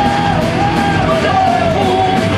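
Live punk rock band playing: a shouted lead vocal holding and bending long notes over electric guitars, bass and drums.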